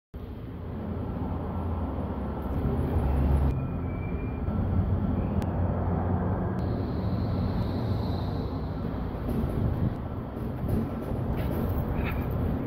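Steady low rumble with a hiss and a few faint clicks; the background shifts in tone at about three and a half and six and a half seconds.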